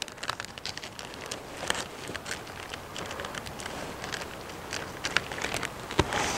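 Kitchen scissors snipping along the edge of a plastic zip-top bag, with the plastic crinkling: a run of small, irregular snips and crackles.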